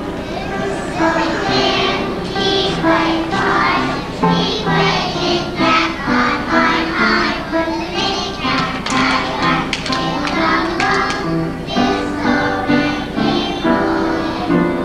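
A group of young children singing a song together as a chorus, with music.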